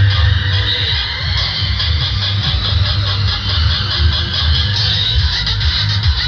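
Loud music with a heavy bass beat, played through horn loudspeakers on a rally vehicle.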